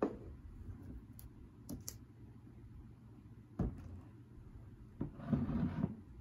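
Drink cans and glass mugs being handled and set down on a tabletop: a knock at the start, a few light clicks, another knock about three and a half seconds in, then about a second of rubbing scrape near the end as a glass mug is slid across the table.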